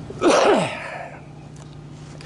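A man's short, breathy vocal burst, falling steeply in pitch, about a quarter second in, like a sneeze, fading within half a second. A faint steady low hum runs underneath.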